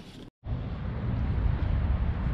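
Outdoor ambient noise: a steady low rumble with a faint hiss over it, starting abruptly about half a second in after a moment of silence.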